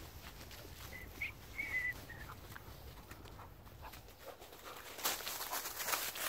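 Footsteps rustling through dry fallen leaves, getting busier near the end. A dog gives a few faint short whines between about one and two seconds in.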